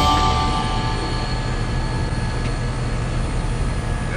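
Box truck's hydraulic liftgate pump motor running steadily as the platform starts to lift off the ground, with the tail of background music fading out at the start.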